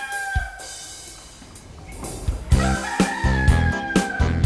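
A rooster crowing: one long crow tails off just after the start, and about two and a half seconds in another long crow sounds as music with a steady thumping bass beat begins.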